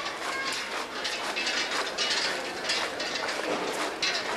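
Irregular metallic clinking and clattering from a Holy Week canopied procession float (paso de palio) being carried: its tall metal canopy poles and fittings rattle as it sways, denser about halfway through.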